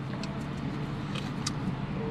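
Steady low hum inside a parked car, with a few faint, brief crinkles of a paper sandwich wrapper being handled.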